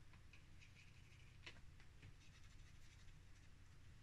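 Near silence with a few faint clicks and light scrapes as a small plastic flip-lid pot is handled and set down on a cutting mat.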